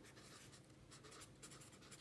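Faint scratching of a pen writing a word on lined notebook paper, in short quick strokes.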